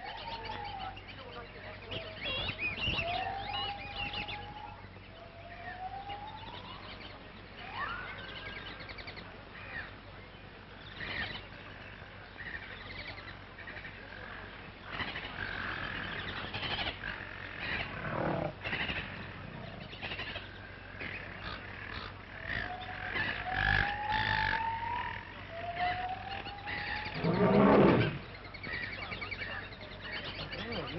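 Wild animal calls in a jungle soundscape: a series of rising cries every few seconds among scattered shorter sounds, with a louder cry near the end, over a steady low hum of an old optical soundtrack.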